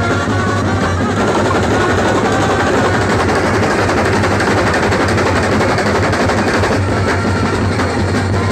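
A massed Kerala band-set drum line playing side drums in a loud, dense, unbroken rhythm. Short melodic notes ride over the drumming near the start and again near the end.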